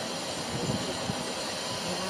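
Steady background hiss of outdoor ambient noise, with a few soft low thumps about half a second to a second in.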